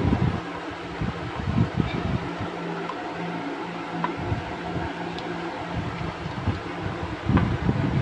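Yellow spatula stirring and scraping a cocoa and coffee mixture in a glass bowl, with soft knocks now and then, the loudest near the end, over a steady mechanical hum.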